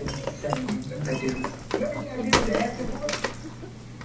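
Hard plastic toys clicking and clattering against a baby walker's plastic tray as a baby handles them, a few sharper knocks among lighter clicks, with a faint voice underneath.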